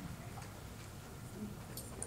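Faint footsteps, a few soft clicks of shoes, over the quiet hum of a large room as a man walks to a lectern.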